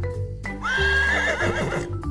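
A horse whinnying once, a wavering call about a second and a half long starting about half a second in, laid over children's background music with a steady bass line.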